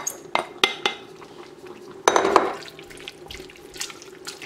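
Wooden spoon knocking and scraping chicken meat off the rim of a glass bowl into a stainless steel stockpot of soup, three sharp knocks with a short ring in the first second. About two seconds in comes a brief wet slosh as the meat is stirred into the broth, then a few light clicks of the spoon against the pot.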